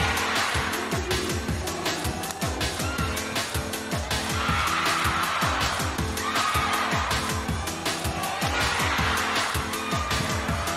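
Background music with a steady beat, with a few higher squealing tones over it.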